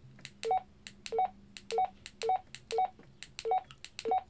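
Key beeps from a Baofeng UV-5R handheld radio as its up-arrow key is pressed six times, about every half second, to step through menu settings. Each press gives a soft click and then a short two-note beep, low then higher.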